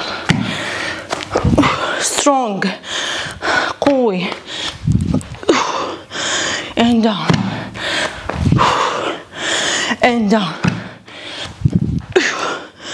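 A woman breathing hard through a set of single-arm dumbbell snatches. Short grunts that drop in pitch come every few seconds, between loud hissing exhales.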